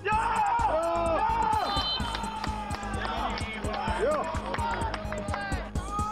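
Men's voices shouting on a football pitch, several loud rising and falling calls starting suddenly, over background music with a steady low tone.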